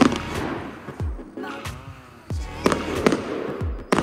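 Aerial fireworks shells bursting: about six sharp bangs spread over the few seconds, the loudest right at the start, each trailing off in a low boom.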